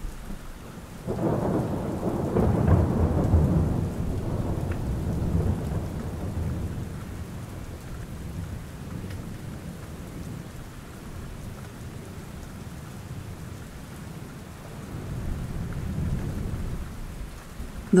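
Steady rain, with a low rumble of thunder that swells about a second in and fades away over several seconds, and a second, softer rumble near the end.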